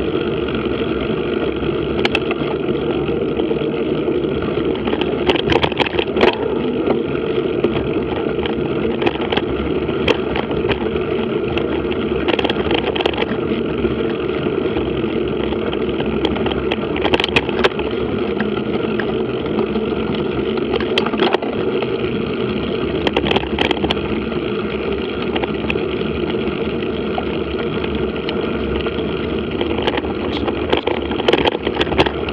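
Steady rumble of mountain bike tyres rolling over a dirt and gravel track. Short clicks and knocks come through it every few seconds as the bike goes over bumps.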